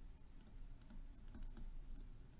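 Faint, irregular taps and clicks of a stylus writing on a tablet screen.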